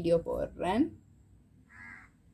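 A woman's voice speaking briefly at the start, then a single short bird call near the end.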